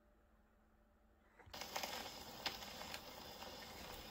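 Near silence. Then, about a second and a half in, the needle of an acoustic phonograph's reproducer meets a spinning 78 rpm shellac record, bringing a sudden steady hiss and crackle of surface noise from the lead-in groove, with a few sharp clicks.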